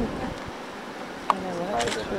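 Faint buzzing in the background, then a bit past halfway a single drawn-out voiced sound starts, dipping and rising in pitch.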